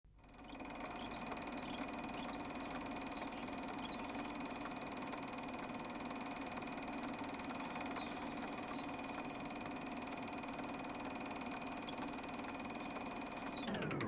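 Film projector running with a steady whirr and fast, even clicking, then winding down with a falling pitch near the end and cutting off.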